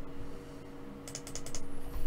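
A quick run of about half a dozen computer keyboard clicks about a second in, over a faint steady electrical hum.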